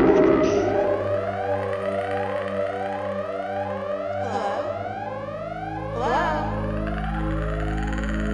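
Electronic sci-fi alarm music: rising synthesizer sweeps repeat about twice a second over steady droning tones, with a brief whoosh about four seconds in and another about six seconds in.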